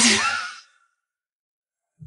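A breathy sigh that fades out within the first second, followed by dead silence for over a second.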